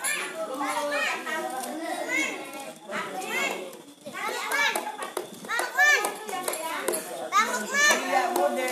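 Many children talking and calling out over one another in lively group chatter. There are louder high-pitched calls about six seconds in and again near the end.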